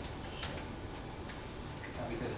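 A couple of short, light clicks, one at the very start and one about half a second in, with a few fainter ticks, over a steady room hum.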